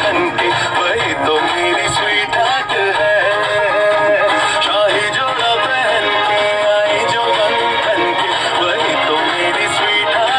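Music: a song with a singing voice over instruments, loud and steady.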